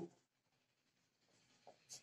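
Faint sound of a marker writing on a whiteboard, almost at the level of room tone.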